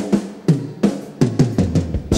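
Rock drum kit playing an unaccompanied opening fill of about ten strokes, each ringing and dipping in pitch, the strokes stepping lower as the fill goes on.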